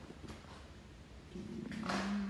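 A man's low, held "mmm" hum on one steady pitch, starting about one and a half seconds in, over quiet room tone.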